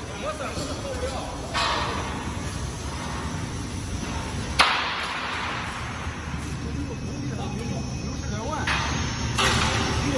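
Workshop noise: a steady low hum with voices in the background. A single sharp bang comes about halfway through, and short bursts of noise come near the end.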